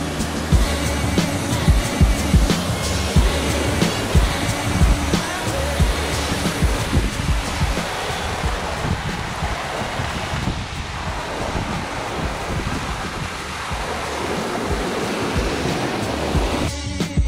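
Steady rushing water of a small waterfall pouring over rocks into the surf, under background music with a steady low beat.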